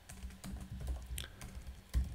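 Typing on a computer keyboard: a run of irregular keystroke clicks as a short note is typed.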